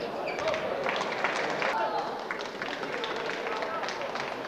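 Table tennis rally: the ball clicks sharply and irregularly off the paddles and the table, over a steady murmur of spectators talking in the hall.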